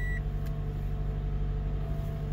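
2014 Toyota Camry's engine idling steadily, heard from inside the cabin. A short electronic beep ends right at the start, and a faint click follows about half a second in, as the radio head unit's buttons are pressed.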